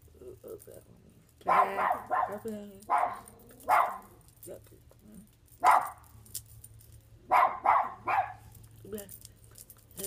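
A dog barking repeatedly, in short runs of barks with pauses between.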